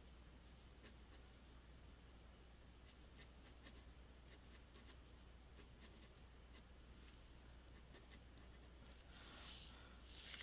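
Faint pencil strokes scratching on paper, a scatter of short light scratches. Near the end comes a louder rustle as the sheet of paper is slid and turned on the desk.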